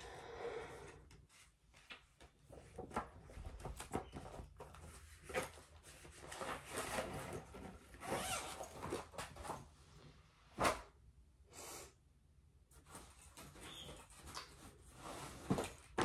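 Rustling and handling of fabric and a zippered cloth project bag, with a zipper being worked, irregular soft clicks and a sharp tap about ten and a half seconds in.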